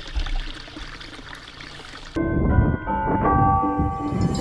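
A shallow stream trickling through grass for about two seconds, then music cuts in suddenly, with several held notes.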